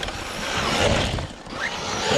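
Arrma Mojave 4S RC truck driving hard across loose sand: a rushing noise of its motor and tyres throwing sand, swelling about a second in.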